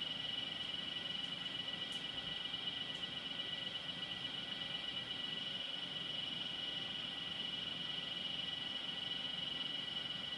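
A steady high-pitched drone, several even tones held without a break or change in level.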